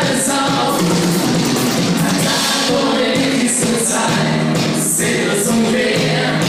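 Live band music played loud through the PA: a male singer sings into a handheld microphone, backed by drums and electric guitar.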